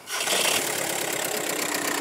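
A VW Golf Plus's 2.0-litre 140 PS diesel engine starts right at the beginning and settles into a steady idle. It runs hard, which is normal for this engine.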